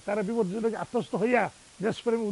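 Only speech: a man talking in Bengali, close to a lapel microphone.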